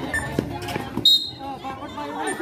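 A basketball bouncing and knocking a few times on an outdoor concrete court amid the chatter of spectators and players, with a short, sharp whistle blast about a second in.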